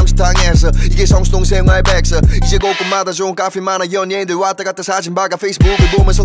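Hip hop track: rapping in Korean over a beat with deep bass kicks. About two and a half seconds in, the bass drops out for about three seconds under the rap, then comes back in near the end.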